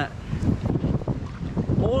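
Wind buffeting the camera microphone, gusting unevenly.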